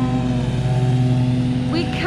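Steady drone of lawn mower engines running at a constant speed, holding one unchanging pitch, with a voice starting again near the end.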